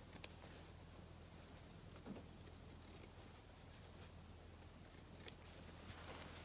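Small fabric scissors snipping through cotton fabric, faint: a few quiet, separate snips, the clearest one about five seconds in.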